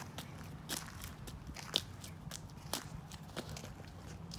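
A child's sandalled feet hopping and landing on a concrete sidewalk: a handful of light, irregularly spaced footfalls.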